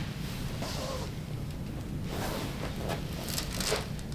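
Soft rustling of clothing and shifting on the treatment table as a patient lying on her back is positioned with arms crossed for a chiropractic adjustment, over a steady low room hum.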